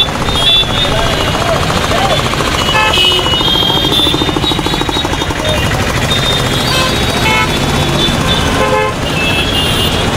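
Loud street crowd noise, many voices at once, with vehicle horns tooting and vehicle engines running.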